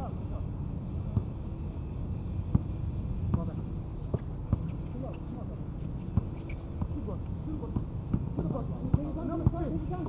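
A basketball bouncing on an outdoor court during play, heard as irregular sharp thuds, with players' voices calling out, more of them near the end.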